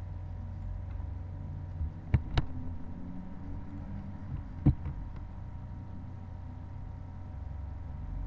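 Three short, sharp clicks at the computer while a spreadsheet table is copied and pasted: two close together about two seconds in and a louder one a little before five seconds. A steady low electrical hum runs under them.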